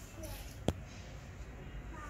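A single sharp knock about two-thirds of a second in, over a low steady hum of shop background noise.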